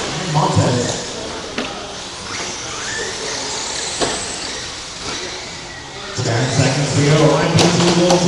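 A race announcer's voice in a large hall, over the faint high whine of electric RC short course trucks running on the track. Two sharp knocks sound in the middle, and the voice comes back about six seconds in.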